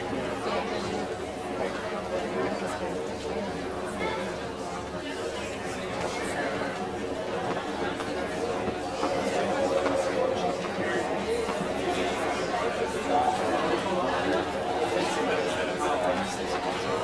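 Audience chatter: many people talking at once, indistinct and steady, as a seated crowd waits.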